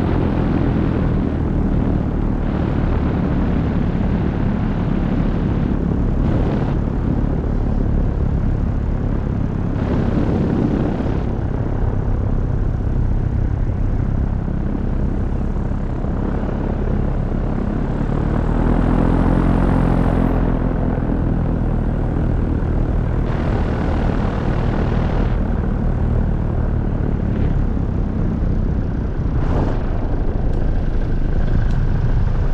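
Paramotor (powered paraglider) engine and propeller running steadily in flight, a continuous droning hum that rises in pitch and swells for a couple of seconds about two-thirds of the way through, mixed with wind noise on the microphone.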